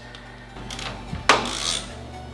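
Hand tools clinking against metal in a car's engine bay as a ratchet and socket work a stubborn turbo nut: a few light clicks, then one sharp metallic knock a little past halfway. Background music plays underneath.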